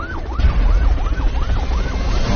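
Emergency-vehicle siren wailing, its pitch sweeping up and down quickly, about two to three times a second, over a deep low rumble that swells about half a second in.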